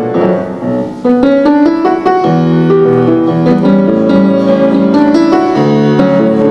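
Solo August Förster grand piano being played: a softer passage for the first second, then loud, full chords and runs.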